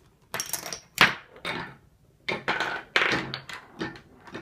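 A ball rolling and clattering along orange plastic toy track in a homemade chain-reaction machine, with a string of rattles and hard clacks as parts of the machine are struck. The sharpest knock comes about a second in, with a short lull before a second run of rattling.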